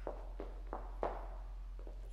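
Faint footsteps and shoe taps on a wooden dance floor: about four soft clicks in the first second or so, over a low steady room hum.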